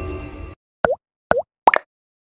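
Intro music fading out and cutting off about half a second in, followed by three quick cartoon 'plop' sound effects, each dipping in pitch and swinging back up, from an animated YouTube-logo transition.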